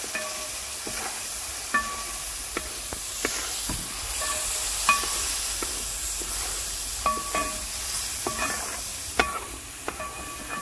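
A long wooden spatula stirring thick sambar in a large metal pot. It scrapes and knocks against the pot's side at irregular intervals, and each knock makes the metal ring briefly. A steady hiss runs underneath.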